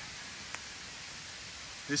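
Steady rush of a waterfall running heavily after recent rain, an even hiss of water with no break. A voice starts speaking near the end.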